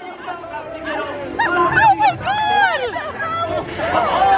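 Overlapping voices talking and calling out: a live pirate actor and boat riders talking over one another with lively up-and-down pitch.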